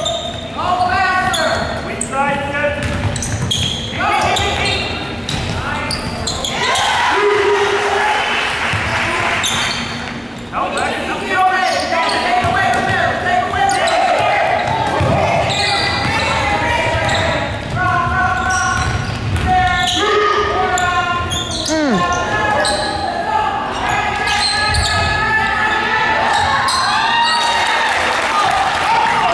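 Basketballs bouncing on a hardwood gym floor, with girls' voices calling out, all echoing in a large gym.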